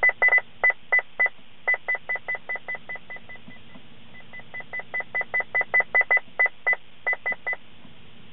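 Escort 9500ci radar detector's short high confirmation beeps, one per press of the steering-wheel volume button, several a second. The beeps grow steadily fainter as the volume is stepped down, nearly vanish about four seconds in, then grow louder again as it is stepped back up.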